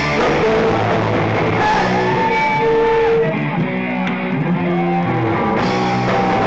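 Live rock band playing in a small bar: electric guitar, bass guitar and drum kit. The band thins out for about two seconds past the middle, leaving held guitar notes, and the full band comes back in just before the end.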